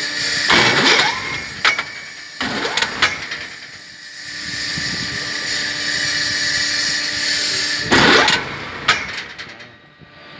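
Construction hoist's rack-and-pinion drive running as the cage travels along the mast: a steady mechanical whine with louder surges of noise about half a second, two and a half and eight seconds in.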